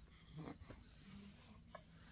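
Near silence with faint breathing sounds from a two-month-old baby, a soft one about half a second in.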